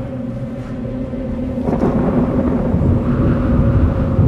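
Thunder rumbling, swelling from a little under two seconds in to its loudest at the end, over a low steady hum.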